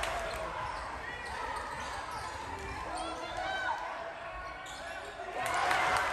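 Live gym sound of a basketball game in play: a ball bouncing and sneakers squeaking on the hardwood, under voices from players and spectators that grow louder near the end.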